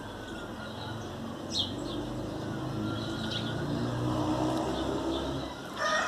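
A low, steady engine hum from a distant motor vehicle swells over a few seconds and fades near the end. A few faint bird chirps come over it.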